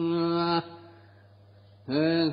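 A monk's voice chanting a Northern Thai sermon in melodic recitation, holding one steady note that ends about half a second in. After a pause with only a faint low hum, the chant resumes near the end.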